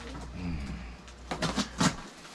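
A cardboard shipping box being handled and worked open, giving a quick run of sharp scratches and taps in the second half, the last one the loudest.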